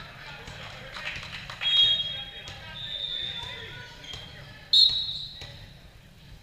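Volleyball game in a large gym: echoing voices and scattered ball hits, with two short high-pitched squeals, about two and five seconds in, that are the loudest sounds.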